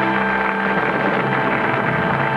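Music from a studio band, held sustained chords that change about a second in, playing under the end of a stage magic illusion.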